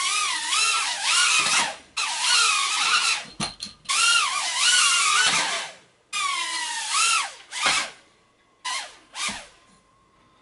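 Tiny BetaFPV Beta75 quadcopter's motors and propellers whining, the pitch rising and falling quickly with the throttle. The whine cuts off short several times, often just after a sharp knock, as the little drone crashes into walls and furniture, then starts up again.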